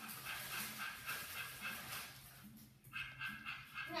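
Television playing a cartoon: a cartoon dog's voice over background music with a regular repeating pattern.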